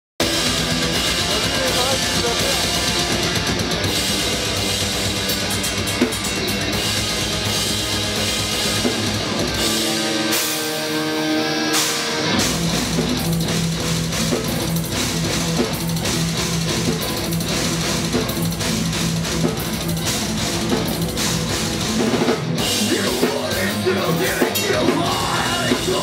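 Metal band playing live: distorted electric guitars, bass and drum kit, loud and dense, heard from among the audience. About ten seconds in the sound thins for about two seconds to a held chord with no bass or drums, then the full band comes back in.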